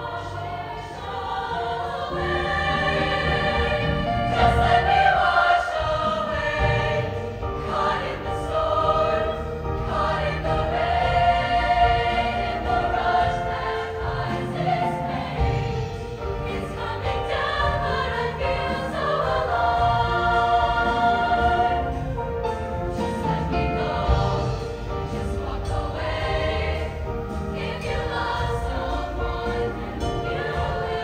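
All-female high-school show choir singing together in harmony, several voice parts held at once.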